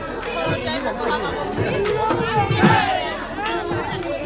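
Crowd chatter: many voices talking over one another at a steady level, with scattered low thumps beneath.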